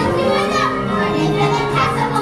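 Music with a crowd of children's voices over instrumental accompaniment from a stage musical number.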